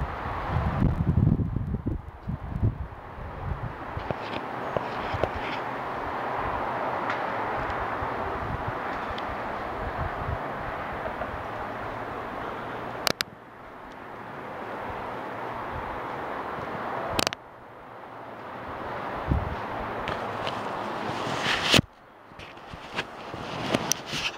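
Strong wind blowing steadily, with gusts buffeting the microphone in the first few seconds. The wind noise cuts off suddenly with a click three times, about halfway through, a few seconds later, and near the end, and builds back up each time.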